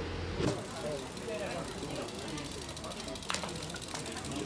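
A steady low engine hum that cuts off about half a second in, followed by indistinct background voices, with a sharp click near the end.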